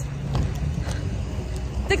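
Wind buffeting a handheld phone's microphone: a steady low rumble with no clear pitch. A woman's voice starts a word just before the end.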